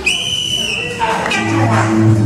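A single high, whistle-like tone held steady for just under a second, then music with low bass notes comes back in.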